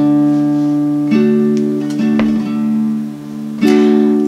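Acoustic guitar playing an intro: a few strummed chords, each left to ring, about one a second.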